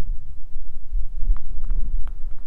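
Wind buffeting the microphone: a gusty low rumble that rises and falls.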